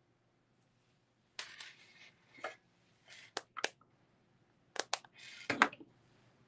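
Hands handling a small silver pendant close to the microphone: a scattered run of soft clicks and brief rustles, with a small cluster near the end.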